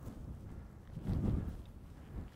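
Outdoor wind rumbling on the microphone, swelling into a stronger gust about a second in, with a few faint ticks of movement.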